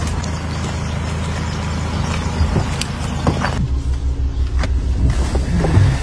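A car running: a steady low engine drone with road noise. About three and a half seconds in the noise drops away to a lower, pulsing engine hum.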